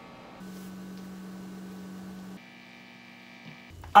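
Steady low electrical hum from a plugged-in electric guitar setup, with overtones. About halfway through it shifts to a slightly higher pitch with a faint high whine, then stops shortly before the end.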